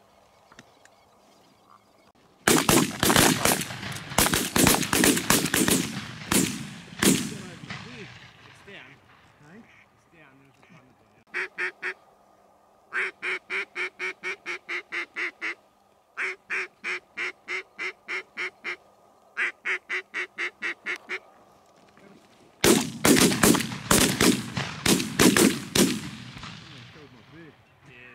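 Two rapid volleys of shotgun fire from several hunters, the shots coming in quick succession with echo, one a few seconds in and one near the end. Between them come four runs of evenly spaced duck quacks, about four a second.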